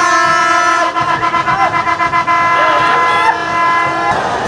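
A horn blown in a stadium crowd, sounding one long, steady note for about four seconds and cutting off at the end, with faint voices underneath.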